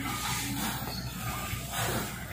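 A man breathing hard through his mouth after a set of leg exercises, the breaths coming as hissing exhales.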